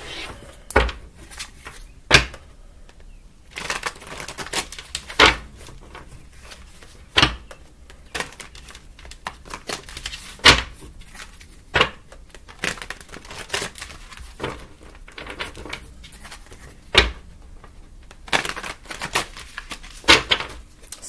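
A deck of tarot and oracle cards being shuffled by hand: bursts of papery rustling and flicking, with sharp taps now and then.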